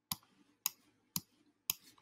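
Four sharp computer mouse clicks, evenly spaced about half a second apart.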